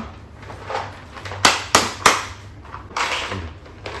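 Plastic packaging being handled: three sharp clacks about a third of a second apart, starting about a second and a half in, then a short rustle near the end.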